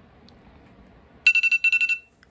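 An electronic alarm beeping: two quick bursts of rapid, high-pitched beeps, starting about a second in and loud against the quiet room.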